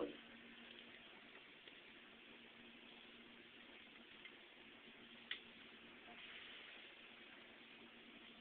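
Near silence: a faint steady electrical hum from the energised amplifier power supply, with a single small sharp click about five seconds in and no capacitor bang.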